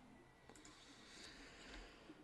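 Near silence with a few faint computer mouse clicks, as a menu item is chosen.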